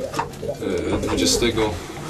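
Racing pigeons cooing in their loft, several birds overlapping. The birds have just been paired for breeding.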